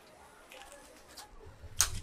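Faint background noise with one sharp click near the end, over a brief low rumble.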